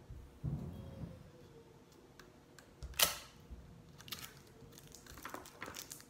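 Quiet handling of a small ball of kitchen foil on a piece of string: light rustles and a few faint ticks, with one sharp click about three seconds in.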